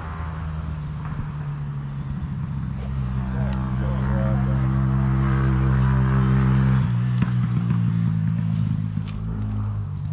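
A motor vehicle engine running steadily, with an even, unchanging pitch. It grows louder for a few seconds, then drops sharply about seven seconds in and carries on more quietly. A voice is briefly heard over it near the middle.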